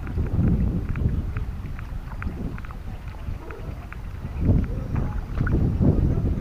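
Wind buffeting an action camera's microphone: an uneven low rumble that swells twice near the end, with faint scattered ticks above it.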